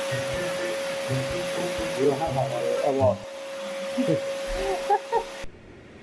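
A small electric motor running with a steady whine and a rushing hiss, like a vacuum or blower; it cuts off suddenly near the end.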